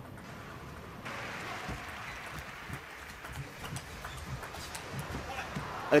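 Table tennis ball clicking off rackets and table in a rally, a series of light taps. Crowd noise swells up about a second in.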